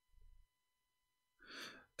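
Near silence, then, about one and a half seconds in, a short breath from a man at the microphone just before he speaks again.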